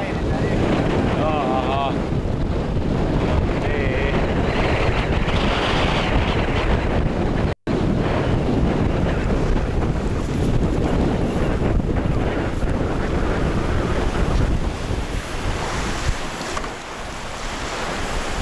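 Strong wind buffeting the camcorder microphone over the rush of breaking waves and rough sea around a small sailing boat in heavy weather. The noise is loud and steady, apart from a split-second dropout about seven and a half seconds in.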